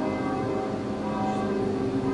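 Kawai grand piano, with held notes ringing on and slowly fading under soft playing.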